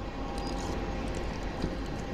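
A passing train, heard as a steady low noise, with one light knock about one and a half seconds in.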